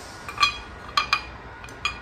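Ceramic pieces clinking as they are handled and set down: four light clinks, each with a short ring.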